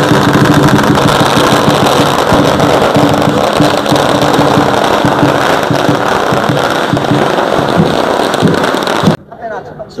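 Lion dance drums and cymbals with a string of firecrackers crackling densely over them; the racket cuts off suddenly about nine seconds in.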